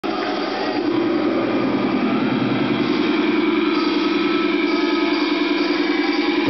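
A steady, buzzing amplified drone held without a beat or any bass, typical of a sustained guitar or amp tone through a venue's PA before a rock song starts.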